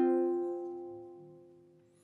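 An F minor chord on a ukulele, strummed once, ringing out and fading away to nothing within about a second and a half.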